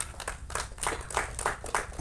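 Scattered, fairly faint applause from an audience: many separate hand claps at an uneven, quick pace.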